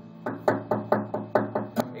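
Acoustic guitar strummed in a steady rhythm, about four to five strums a second, each with a sharp, percussive attack.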